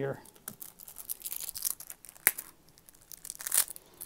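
Decades-old cellophane shrink-wrap being torn and crinkled off a cardboard trading-card box in irregular rustles, with a sharp click a little past halfway.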